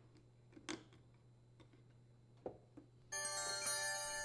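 A couple of faint small clicks from a pick working a plastic retaining pin out of a dishwasher door panel. About three seconds in, a sustained chime sound effect of several steady ringing tones begins; it is the alert that goes with an on-screen 'sharp edges' caution icon.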